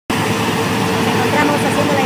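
World tracked corn combine harvester running in the field, its engine and machinery making a steady dense rumble with a held hum.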